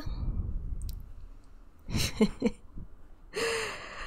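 A woman chuckling under her breath about two seconds in, then a breathy sigh-like exhale near the end, close to the microphone.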